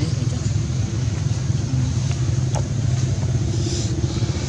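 A motor vehicle engine running, a steady low rumble, with one sharp click a little past halfway.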